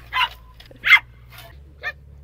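Small dog barking in short, sharp barks, three in quick succession, the middle one the loudest, as it plays excitedly.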